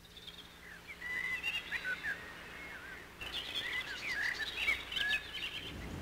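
Birds chirping and calling in a quick run of short chirps and whistles, pausing briefly a little before halfway through and then going on.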